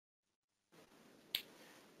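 Near silence: faint room tone with one short, sharp click a little past the middle.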